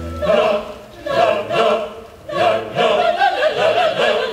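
A held orchestral chord breaks off just after the start, and an opera chorus comes in singing in short phrases with vibrato over the orchestra.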